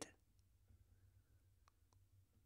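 Near silence: faint room tone with a low hum, and two faint clicks close together near the end.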